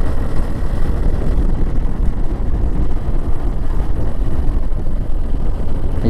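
Motorcycle riding along at a steady speed: its engine and tyre noise run together with a heavy, even rush of wind on the microphone.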